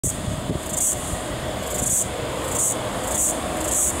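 Distant freight train hauled by four diesel locomotives approaching, heard as a low rumble. Over it a louder high-pitched buzz swells and fades about once a second.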